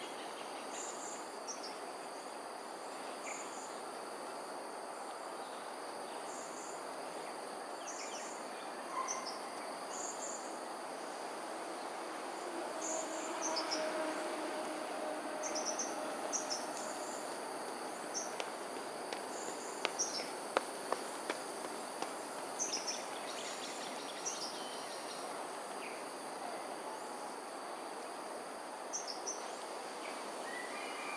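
Steady high-pitched insect drone with short bird chirps scattered throughout, over a steady low background hum. A few sharp clicks come about two-thirds of the way in.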